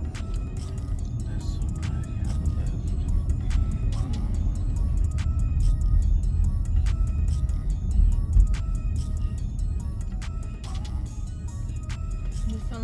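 Wind buffeting and road rumble inside a moving car with its sunroof open, a dense low rumble that swells a little past the middle. Music with a steady beat of sharp clicks plays over it.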